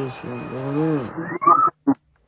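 A person's voice in two drawn-out sounds that rise and fall in pitch, then a click and a short, higher sound about a second and a half in that cuts off abruptly.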